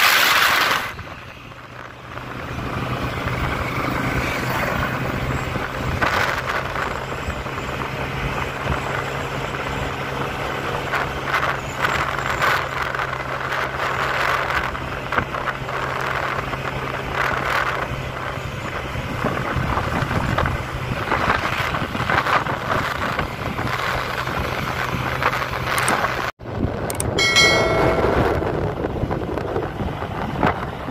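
Motorcycle engine running at cruising speed with wind rushing over the microphone, a steady engine hum under the noise. It cuts out sharply for an instant about 26 seconds in, and a brief pitched tone sounds soon after.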